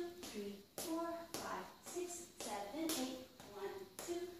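A woman counting dance steps aloud, with sharp taps and scuffs of boots stepping on a tile floor between the counts.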